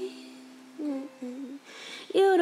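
A female voice humming a short, soft phrase of the song's melody, just after a held sung note fades away.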